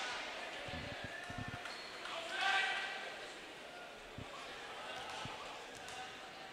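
Basketball bounced on a hardwood gym floor in a free-throw routine: a few quick bounces in the first second and a half, then single bounces later. A murmur of crowd voices echoes in the gym.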